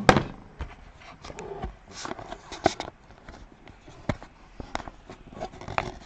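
A cardboard board-game board being handled and unfolded: an irregular string of knocks and taps with light rustling, the loudest knock right at the start.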